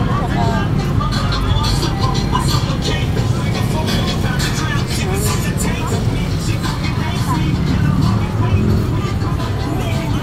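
Busy street-market ambience: a steady low traffic rumble under indistinct chatter of many voices, with scattered clicks and rustles.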